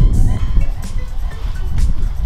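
Wind rumbling on the microphone, with rustling and scraping as a woven feed sack is dragged out from under a plastic tarp, over quiet background music.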